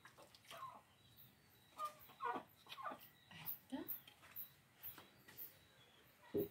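Faint, short whining animal calls, several in a row, each rising and falling in pitch. Faint high chirps repeat about twice a second in the second half.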